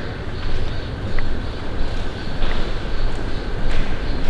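Steady rumbling noise with a couple of faint clicks, and no voice.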